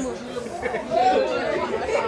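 Several people talking at once: overlapping conversational chatter in a hall.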